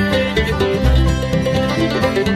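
Live bluegrass band playing a fast tune, with banjo, mandolin and guitar over a steady bass pulse.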